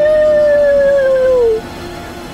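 Wolf howl sound effect: one long howl that rises at the start, holds, then slides down and stops about one and a half seconds in.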